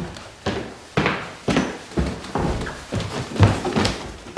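A steady run of dull bumps, about two a second, each with a short ringing tail. In the film this is the bumping in the night: a girl knocking her head against a wooden dresser.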